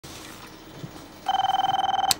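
An electronic telephone ring: one steady high tone that starts a little past halfway and stops with a click.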